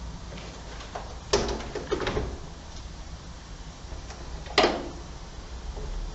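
Handling knocks: a few sharp knocks and clatters, one about a second in, a lighter one shortly after and a louder one past the middle, over low room noise.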